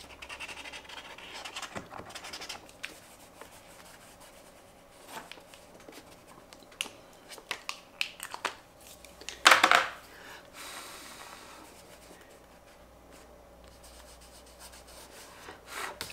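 Posca acrylic paint marker scribbling and rubbing on sketchbook paper, a soft scratchy sound with scattered small clicks as the markers are handled. One louder brief noise comes about nine and a half seconds in.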